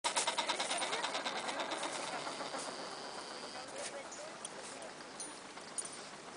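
Adélie penguins calling in a colony: a rapid, pulsed chatter in the first two seconds that fades into scattered, softer calls.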